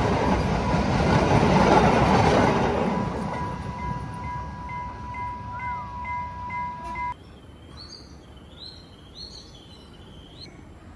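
Passenger train passing close by at a level crossing: the loud rumble of the carriages fades over the first three seconds as the train pulls away. A steady high ringing tone with a regular tick, the crossing's warning alarm, carries on until it cuts off suddenly about seven seconds in, and birds chirp after that.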